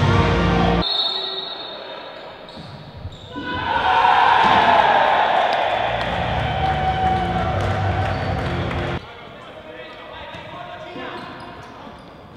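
Futsal ball being kicked and bouncing on a wooden indoor court. From about three and a half seconds in, a loud burst of shouting and cheering from players and crowd greets a goal, then cuts off abruptly at about nine seconds. Background music ends suddenly just before the court sound begins.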